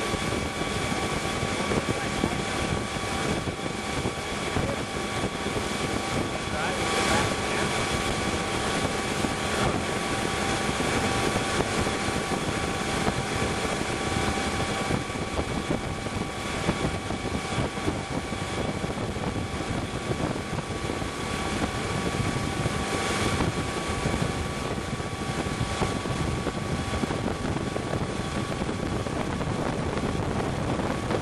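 Ski boat's engine running steadily at towing speed, with a steady whine over the rush of wind and churning wake water.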